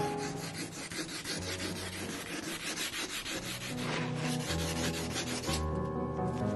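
Wet-sanding a lacquered panel by hand: fast, repeated back-and-forth rubbing of an abrasive over the wet lacquer surface. Soft background music runs underneath and comes up louder near the end.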